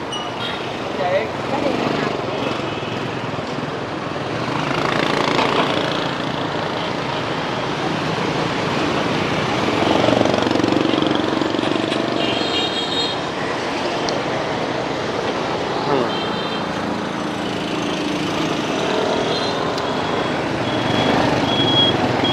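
Busy street ambience: a steady run of motorbike engines passing close by, with voices of people talking in the background.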